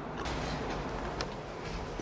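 Steady background noise with no speech, marked by a couple of faint clicks.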